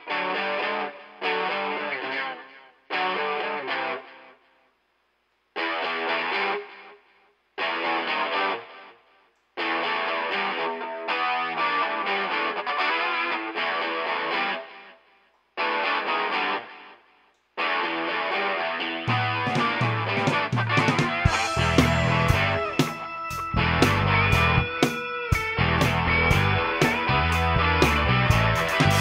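Distorted electric guitar playing blues-rock phrases on its own, stopping briefly between phrases. About nineteen seconds in, a bass guitar and drums come in and the band plays together.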